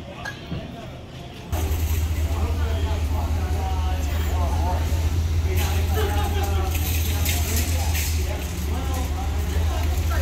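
A fire engine's diesel engine idling with a steady low rumble, under voices of people talking. It starts suddenly about a second and a half in, after a few seconds of quiet store ambience.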